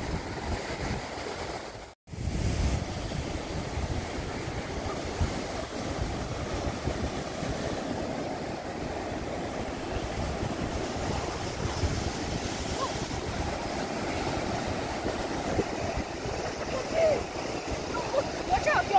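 Ocean surf breaking and washing up the beach in a steady rush, with wind on the microphone. The sound cuts out for an instant about two seconds in.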